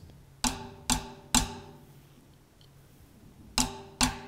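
Tip of a drumstick striking the rim of a snare drum, played to train the Sensory Percussion sensor's rim-tip zone: three sharp clicks about half a second apart, then a fourth near the end, each ringing out briefly.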